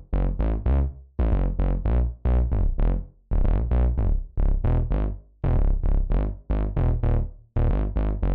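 Synth bass line from Logic Pro X's 'Heavy Synth Bass' patch played on its own: a riff of short notes, each fading quickly, in quick groups with brief gaps between phrases.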